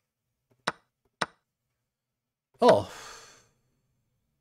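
Two sharp clicks about half a second apart, then a man's surprised "oh" that trails off into a breathy sigh.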